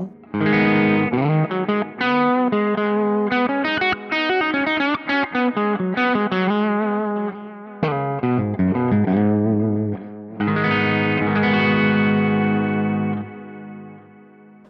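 PRS electric guitar played with distortion: a lead phrase of held notes, a fast run of single notes in the middle, then a long sustained note that dies away shortly before the end.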